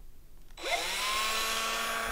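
Cordless drill motor triggered about half a second in, its whine rising as it spins up, then running steadily at full speed.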